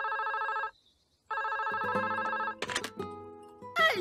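Telephone ringing with the double ring of a British phone: the first ring ends just after the start, and the second starts about a second and a half in. Each ring is an even, fast trill.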